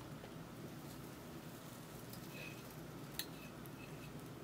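Faint room tone with a few light clinks of a metal fork against a ceramic plate while cake is cut, the sharpest click about three seconds in.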